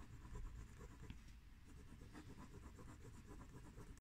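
Faint scratching of a pencil drawing lines on paper.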